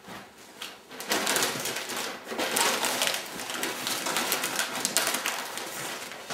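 Sheets of packing paper crinkling and rustling as a pottery vase is wrapped in them, starting about a second in.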